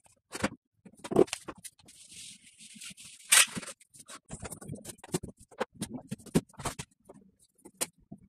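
Irregular light knocks, clicks and scrapes from hands working on a wooden cabinet. A brief high hiss comes about two seconds in, and a sharper knock, the loudest sound, about three and a half seconds in.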